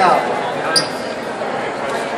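Background voices and murmur of people in a public hall, with a falling voice right at the start and one sharp click about three-quarters of a second in.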